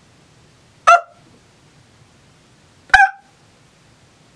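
Two short, high-pitched animal yips about two seconds apart, each starting sharply and cut off quickly.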